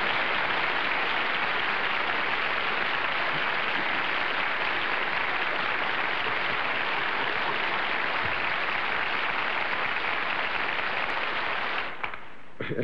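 Studio audience applauding steadily; the applause stops sharply near the end.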